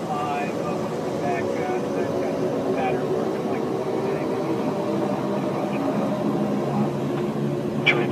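Steady engine drone with several level tones, heard from inside a moving pickup truck's cab pacing a taxiing turboprop plane, with faint voices underneath.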